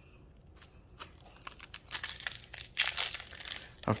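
Foil wrapper of a Topps Chrome Star Wars trading-card pack crinkling as it is handled and torn open, starting faintly about a second in and growing louder and denser toward the end.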